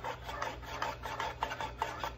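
A mixing spoon stirring and scraping inside a metal muffin-tin cup, with irregular light clicks as it knocks the tin. It is mixing red and blue cornstarch-and-water paint together.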